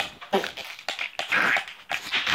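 Children giggling in breathy, wheezy bursts, the strongest near the end, with scattered knocks from the phone being handled.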